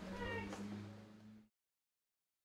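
Faint room sound with a steady low hum and one short, high, pitched call near the start, fading out to silence about a second and a half in.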